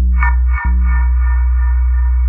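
Electronic dub/ambient music: a deep, steady bass that cuts out for a moment about half a second in, under short repeated higher notes with echo effects.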